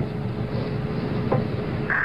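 Steady rumbling hiss of an old broadcast audio track, with a faint constant hum running through it.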